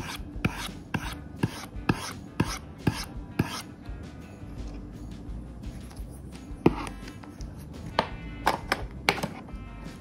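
Plastic pen nib knocking on a Xencelabs pen tablet's matte drawing surface. The knocks come about two a second for the first few seconds, then pause, then one stronger knock and a few scattered ones follow near the end. The knocks sound pretty solid, a sign the board is not made of cheap materials.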